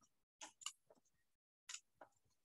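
Scissors snipping through white paper: three short, faint snips, two close together about half a second in and one near the end.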